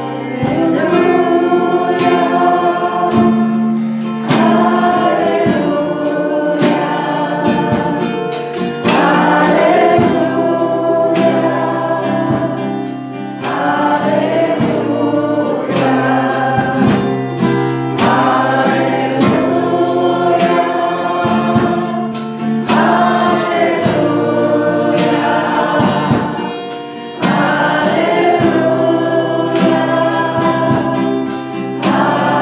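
A live worship song: a woman singing lead into a microphone with the congregation singing along, over strummed acoustic guitar and a steady beat.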